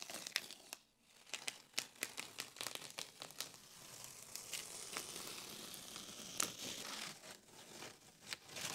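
Blue painter's tape being peeled off painted wooden shiplap paneling, crackling and crinkling as the adhesive lets go. Irregular crackles throughout, with a longer continuous rip in the middle, all fairly faint.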